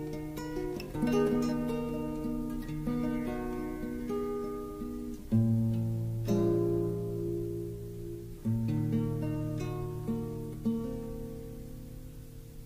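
Acoustic guitar playing a slow song intro: picked notes and chords that ring and fade away. A fresh chord is struck every second or two, the strongest a little after five seconds in and again past eight seconds.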